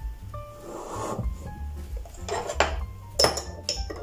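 A metal spoon clinking against a small glass bowl while stirring beaten egg yolk and water, a quick run of about five clinks starting about two seconds in, over soft background music.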